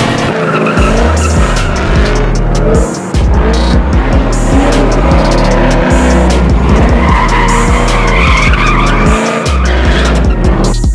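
A car drifting in circles, its tyres squealing and its engine revving up and down, mixed with electronic music that has a heavy, rhythmic bass.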